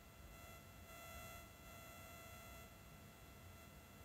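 Near silence: faint room tone with a few faint steady high tones.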